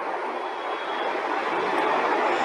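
Steady rushing background noise with no voice, slowly growing louder.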